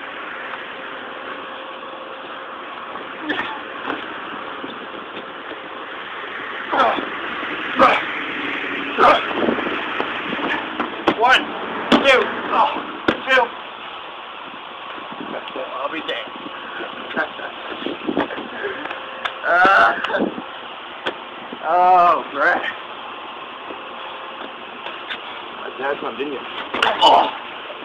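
Scattered indistinct shouts and calls from people's voices over a steady background hiss, with the loudest calls about three-quarters of the way through.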